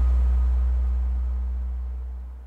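The song's final note ringing out: a deep sustained bass tone with faint higher tones above it, fading away steadily.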